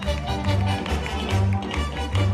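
Live Yucatecan jarana music in a lilting triple-time rhythm, with a bouncing bass line and sharp, regular taps running through it, typical of the dancers' zapateado footwork.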